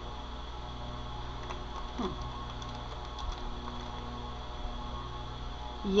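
Steady low electrical hum, with a couple of faint brief sounds about two and three seconds in.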